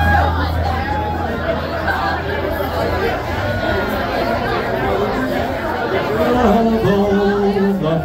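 Crowd chatter in a busy pub, with a low steady hum for the first few seconds. From about six seconds in, a man's voice starts singing slow, long-held notes of a folk ballad over the talk.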